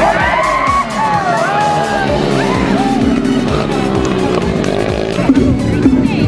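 Dirt-bike engines revving, rising and falling in pitch as the bikes race through a turn, over background music with a steady beat.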